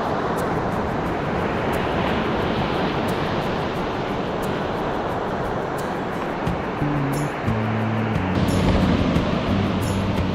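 Surf on a sandy beach: a steady rush of breaking waves and foam washing up the sand. Background music with low notes comes in about seven seconds in.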